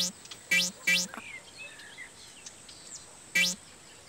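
Cartoon bounce sound effect for a bouncing beach ball: short pitched 'boing' notes, three within the first second and one more about three and a half seconds in. Faint birdsong chirps between them.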